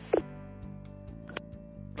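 Background music with steady low held notes. A short, loud blip that falls in pitch sounds just after the start, and a fainter one comes a little past the middle.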